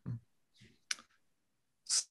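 A pause in a man's speech: a faint breath, then a single sharp click about a second in, with the next word just starting at the end.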